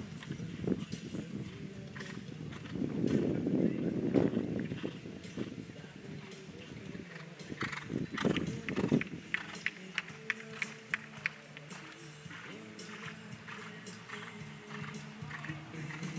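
Horse's hoofbeats at the canter on sand arena footing, with a run of evenly spaced sharp beats about halfway through. Music plays steadily in the background.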